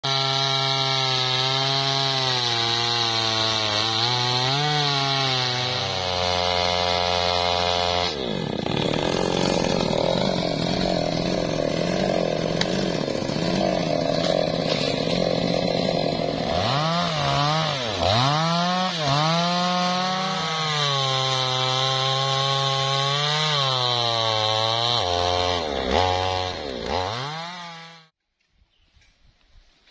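Two-stroke chainsaw running at high revs as it cuts into a teak trunk. From about halfway, its pitch repeatedly dips and climbs again. The sound stops suddenly at the end.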